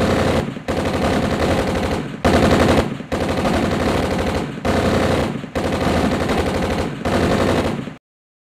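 Rapid automatic gunfire, like a machine gun, in seven long bursts broken by brief pauses.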